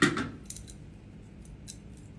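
Light metallic clicks of a handheld eyelash curler being handled and squeezed, a few separate snaps, after a brief rustle at the start.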